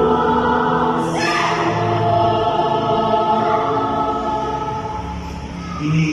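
Mixed church choir singing a Mass hymn in long held notes, accompanied by an electronic keyboard.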